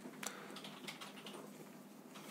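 Faint rustling of a paper tissue being handled and unfolded, with light crinkling clicks, the clearest about a quarter second in.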